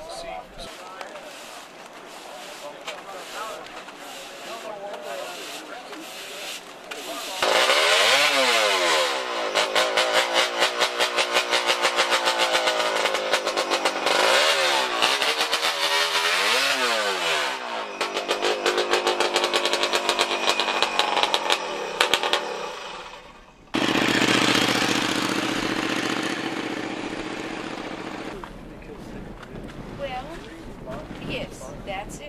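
A motorcycle engine runs with rapid firing pulses and revs up and down several times. After a sudden cut, a steady engine note holds and then fades near the end. The first several seconds are quieter, with wind and background noise.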